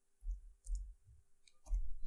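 A few soft keystrokes on a computer keyboard, in three short groups, with faint clicks.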